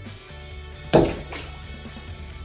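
A bath bomb dropped into a filled bathtub, splashing into the water once about a second in, over background music.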